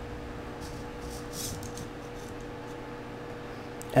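Steady quiet hum with a constant tone held throughout.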